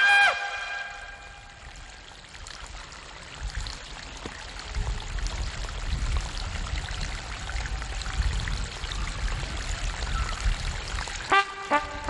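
Outdoor background noise: a steady hiss with a few faint scuffs and clicks, and a low rumble that builds from about four seconds in. A brass music sting trails off at the very start.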